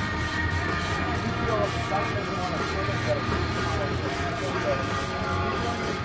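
Boat engine running steadily: a low hum with several steady higher tones above it.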